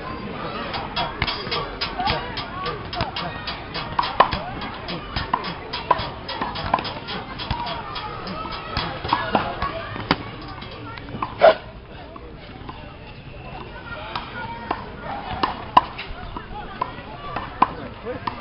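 Voices of several people talking in the background, cut by frequent sharp clicks and knocks. The knocks are thickest in the first half, with a louder single knock about eleven and a half seconds in.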